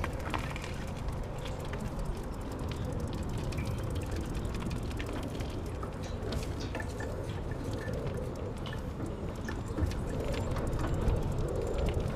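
Steady low rumble of wind and movement noise on a walking person's camera microphone, with scattered faint clicks and rattles.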